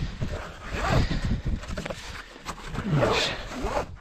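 Nylon ratchet-strap webbing being pulled and fed through by hand, with two rasping pulls, about a second in and around three seconds in.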